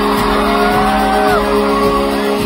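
Live pop concert music: a vocal group singing long held notes that slide down and break off about a second and a half in, over steady guitar accompaniment.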